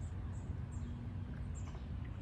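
Outdoor ambience: a steady low rumble, with a few brief, faint high chirps scattered through it.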